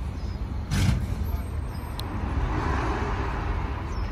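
Keiyo Line E233-series electric train creeping slowly into the platform, a steady low rumble with a sharp knock just under a second in. A hiss of air swells up in the second half.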